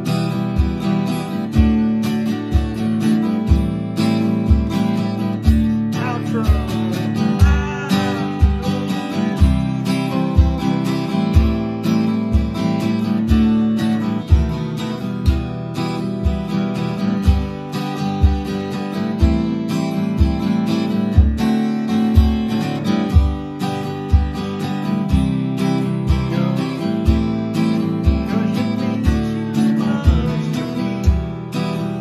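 Steel-string acoustic guitar strummed through chord changes at a medium tempo, with an acoustic bass-drum stomp box kicked on a steady beat, about three thumps every two seconds.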